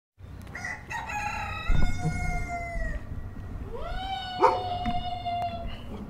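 A rooster crowing twice in two long calls, the second rising at the start, then held and falling off at the end, over a low rumble.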